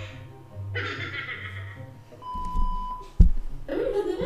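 Quiet guitar music in the background, then a steady electronic beep lasting about a second, cut off by a sharp loud click.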